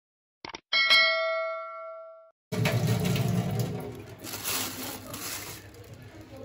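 Subscribe-button sound effect: a quick double click, then a single bell ding that rings out and fades over about a second and a half. From about two and a half seconds in, a steady rushing noise follows.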